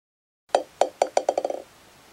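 Sound effect of a ball bouncing: a run of knocks, each with a short ringing note, starting about half a second in and coming quicker and quicker until they run together and stop, as a ball settling on the floor.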